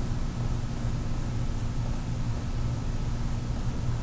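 Steady low hum with a light even hiss: room tone, with no distinct event standing out.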